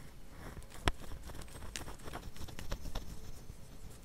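A deck of tarot cards being shuffled by hand: irregular soft taps and flicks of cards against each other, with one sharper tap about a second in.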